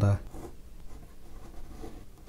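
Fine-tip ink pen scratching lightly across watercolour paper in a few quick, irregular sketching strokes.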